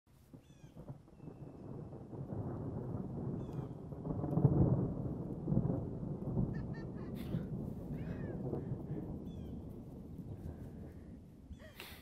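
Outdoor ambience: a low rumble that builds over the first few seconds, peaks about four and a half seconds in and slowly fades, with birds chirping now and then.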